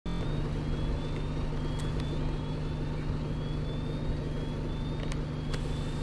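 Double-decker bus engine idling steadily with a low hum, over which a faint high whine rises and repeats about once a second, with a few light clicks.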